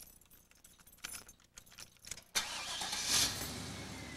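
Keys jangling in a Jeep's ignition, then the engine starting suddenly about two and a half seconds in, rising briefly and settling to a steady idle.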